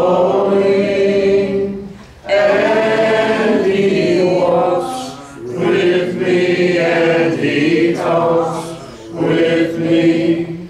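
Church congregation singing a hymn a cappella, many voices together in long held phrases with short breaks between lines, about two, five and nine seconds in.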